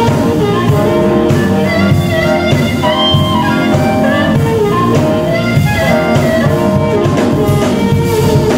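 Live blues-funk band playing: a harmonica lead played through the vocal mic, over electric guitar, keyboard and a steady drum kit beat.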